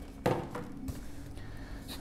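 Black cardboard box lid set down on a wooden table: a brief soft knock and scrape shortly after the start, then faint rustling as the box's contents are handled.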